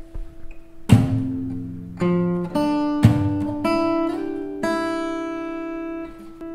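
Fingerstyle acoustic guitar playing one bar, moving from an F chord to a G chord. About a second in, a percussive palm slap is struck together with a low bass note, and a second slap with a bass note comes about three seconds in. Between and after them come plucked notes, a slide up the second string, and an open first string left ringing.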